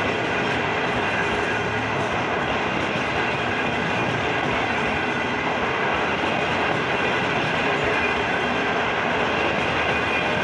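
Long-distance passenger coaches rolling past close by at speed: a steady, loud rush of steel wheels on rail.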